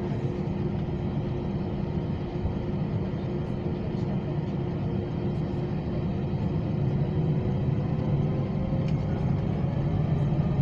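Cabin drone of an Airbus A320-232's IAE V2500 jet engines at low power while the aircraft taxis, a steady low hum with a fainter steady tone above it. Near the end a whine starts rising in pitch and the sound grows a little louder as the engines spool up.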